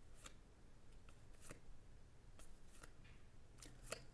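Faint, scattered flicks and clicks of paper baseball cards being slid off a stack one at a time and onto another, over near silence.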